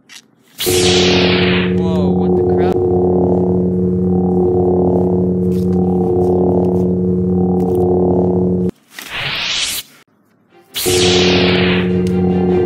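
Lightsaber sound effect: a falling swoosh as the blade ignites about half a second in, then a steady electric hum. Near 9 s a rising swoosh cuts off as it switches off, and at about 11 s a second blade ignites and hums.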